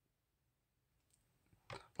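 Near silence, with one faint click about a second in.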